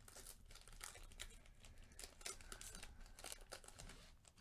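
Foil wrapper of a Topps Chrome card pack crinkling faintly in gloved hands as it is torn open, a run of quick small crackles.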